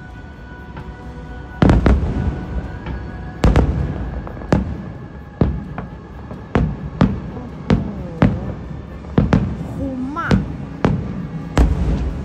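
Aerial fireworks going off: about a dozen sharp booms at irregular intervals. The first loud one comes nearly two seconds in, and each has a rumbling, echoing tail.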